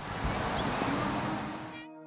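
Steady rushing noise of wind on the microphone outdoors. It cuts off abruptly near the end, where soft sustained music tones come in.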